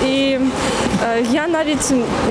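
Speech only: a woman talking in Ukrainian, opening with a drawn-out hesitation sound.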